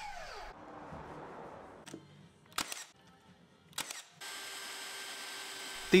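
Cordless mitre saw blade spinning down after a cut in thin plywood, its pitch falling quickly. Two sharp clicks follow, then a steady quiet whir near the end.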